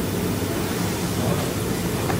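Steady room noise in a lecture hall: an even low rumble with hiss above it, without any distinct event.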